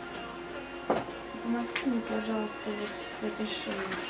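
Soft background music with sustained held notes, with a couple of short clicks about one and two seconds in.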